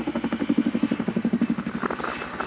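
Helicopter rotor sound effect in a hip-hop track: a rapid, even chopping pulse of about a dozen beats a second, with no beat or vocals over it.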